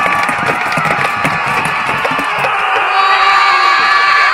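Many voices yelling together in a loud, sustained battle cry as Viking reenactors charge with shields and weapons, with scattered knocks and clatter through it.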